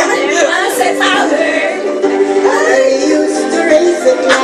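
Music with sung vocals playing from a television, with long held notes in the second half.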